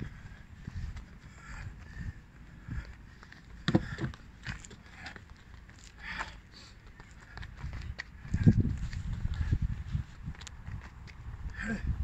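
Quick, light footsteps of a boxer's trainers tapping through an agility ladder on a rubber running track, as scattered short taps. A louder low rumble comes in about eight seconds in.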